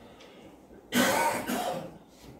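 A man coughing: a sudden, harsh cough about a second in, lasting about a second.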